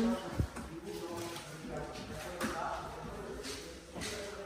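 Faint, indistinct voices of people talking in another part of an empty house, with a short knock about half a second in and another sudden sound about two and a half seconds in.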